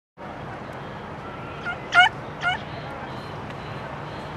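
A small dog yipping three short times, the middle yip loudest, over a steady background hum.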